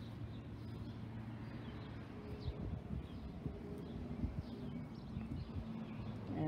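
Small birds chirping faintly now and then over a low, steady background hum.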